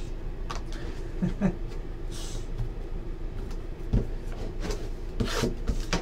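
Trading cards and a shrink-wrapped card box being handled on a tabletop: scattered light taps and clicks, a brief rustle about two seconds in and a soft knock about four seconds in, over a steady low room hum.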